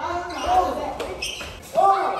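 Wordless shouts and cries from several people during a scuffle, with one sharp knock about a second in.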